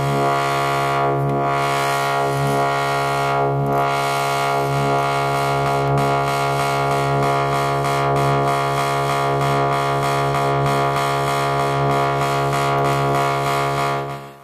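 Buchla modular synthesizer: one sawtooth pitch from a 258v oscillator sounding through all three sections of a 291e Triple Morphing Filter as a steady, bright, low drone. Its lower tones swell softly about every 1.2 seconds under envelope modulation of the filter sections.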